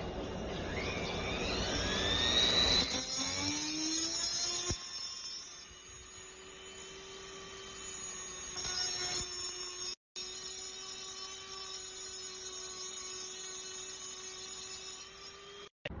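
High-speed rotary tool with an abrasive cut-off disc grinding down a piece of lapis lazuli. The motor's whine rises in pitch over the first few seconds, with rougher grinding noise under it, then settles into a steady whine. The sound drops out briefly about ten seconds in and again just before the end.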